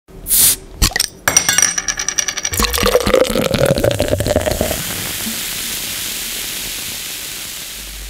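Beer sound effects: a short hiss and a run of glassy clinks, then beer pouring into a glass, then a long fizzing hiss of foam that slowly fades.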